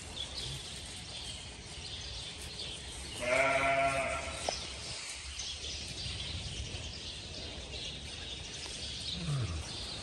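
A sheep bleats once, about three seconds in: a single wavering call lasting just under a second, over a steady low background noise.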